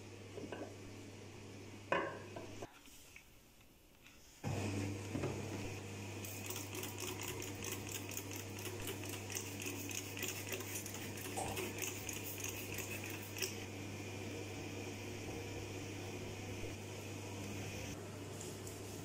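A bottle knocks sharply against a ceramic washbasin, then a trigger spray bottle squirts cleaner onto the basin in a quick run of sprays lasting several seconds, over a steady low hum.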